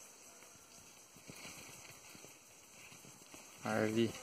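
Faint forest ambience with light scattered rustles and ticks, like leaf litter and brush moving as someone walks. A short human voice sound comes in near the end.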